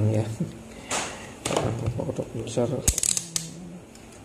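Low muttered speech with a few sharp clicks and rattles from handling test leads and circuit boards on a workbench, one about one and a half seconds in and a cluster near three seconds.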